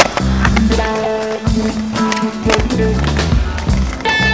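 Music playing over the sound of a skateboard on concrete: wheels rolling and the board clacking, with one sharp clack at the very start as the loudest sound.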